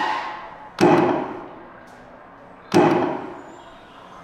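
Arcade shooting-gallery game firing its gunshot sound effects: two loud shots about two seconds apart, each fading out over a second or so, with the tail of an earlier shot dying away at the start.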